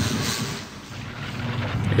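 Deep rumbling sound effect from a tokusatsu monster show's soundtrack, as a giant kaiju wakes beneath a city. It eases a little past the middle and builds again toward the end.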